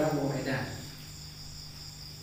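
Crickets trilling steadily in the background during a pause, over a low steady hum; a man's voice trails off in the first half second.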